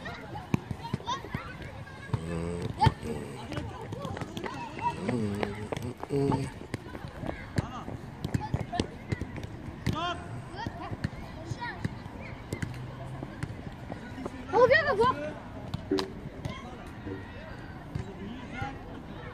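Children's voices and shouts on a football pitch, with repeated short thuds of footballs being kicked; the loudest sound is a single shout about fifteen seconds in.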